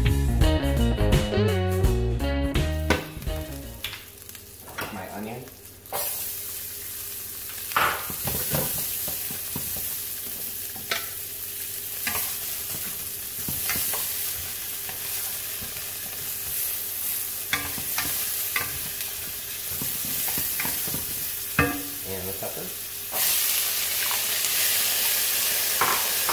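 Guitar background music fading out in the first few seconds. Then diced onion sizzles in hot oil in a stainless steel pan while a wooden spoon stirs it, with scattered scrapes and knocks of the spoon against the pan. The sizzle gets louder near the end.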